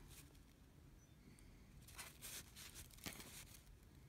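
Near silence, with a few faint rustles of aluminium foil wrapping being handled, about halfway through and again a second later.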